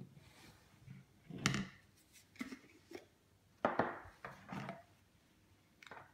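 Hard plastic breast-pump parts and a plastic baby bottle being handled: a scattering of short rubs, scrapes and clicks as the bottle's teat and collar come off, the loudest about a second and a half in and just past the middle.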